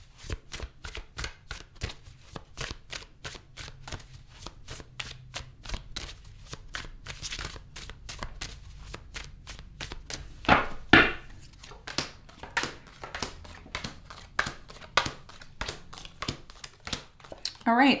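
A tarot deck being shuffled by hand, cards flicked from one hand onto the pile in the other, giving a steady run of soft card slaps about three or four a second. A louder flurry comes about ten seconds in.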